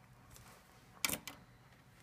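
A sharp click about a second in, followed by a weaker one about a quarter second later: pen-handling noise as the black marker pen is set aside and a blue pen is taken up, after faint pen strokes on paper.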